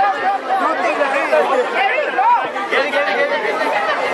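A crowd of voices chattering over one another, many people talking and calling out at once.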